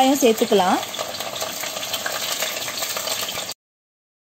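Chopped shallots sizzling steadily in hot oil in a clay pot as they are stirred with a wooden spatula. The sound cuts off suddenly near the end.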